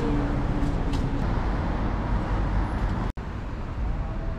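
Outdoor street ambience: a steady rumble of road traffic noise, heaviest in the low end. About three seconds in it drops out for an instant, then carries on slightly quieter.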